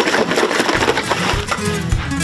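Milk streaming from a hose into a metal bucket, a steady frothy rushing splash. Acoustic guitar music comes in under it about a third of the way in.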